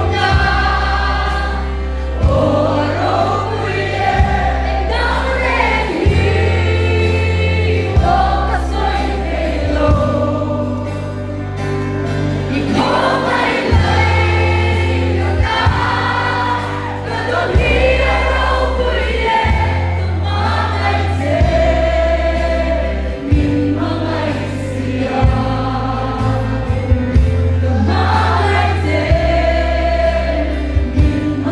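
Live gospel worship band: a woman sings lead into a microphone over drum kit and guitars, with a heavy bass line that changes note about every two seconds.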